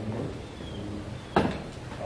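A single sharp knock about one and a half seconds in, over quiet room sound.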